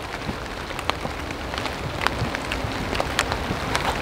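Steady outdoor hiss with scattered light ticks and taps, the patter of a forest floor covered in dry leaves.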